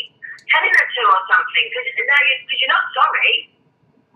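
A person talking over a telephone line in a recorded call, the voice thin and narrow-sounding, stopping shortly before the end.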